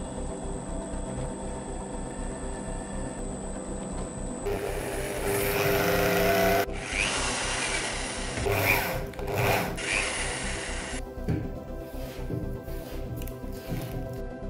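Background music with a benchtop drill press running and drilling through steel. The cutting is loudest from about four and a half seconds in to nearly seven seconds, with shorter bursts later.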